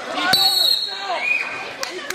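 Voices shouting over a wrestling bout, with a sharp smack about a third of a second in, followed at once by a brief shrill whistle.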